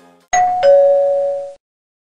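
Two-tone ding-dong doorbell chime: a higher note, then a lower note a third of a second later, both ringing for about a second before cutting off abruptly. It announces a delivery at the front door.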